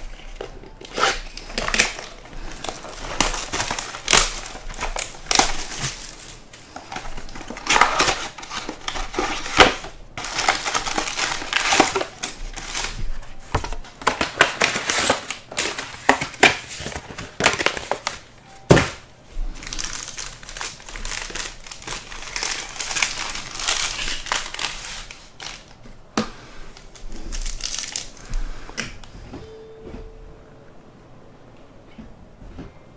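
Crinkling and rustling of plastic and foil packaging, with sharp crackles, as a sealed box of Panini Select basketball cards is opened and its foil packs are taken out and handled.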